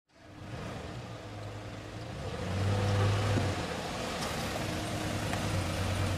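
Hummer H2's V8 engine running, a steady low hum that swells for about a second around the middle and then settles.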